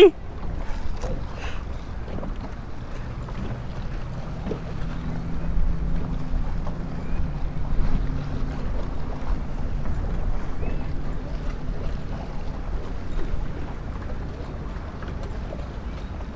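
Wind rumbling on the microphone aboard a boat on open water, with a faint steady motor hum from about three seconds in until near the end.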